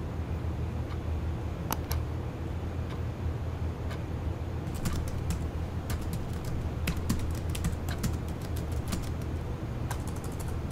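Typing on a computer keyboard: two clicks about two seconds in, then a quick run of keystrokes through the second half, over a steady low hum.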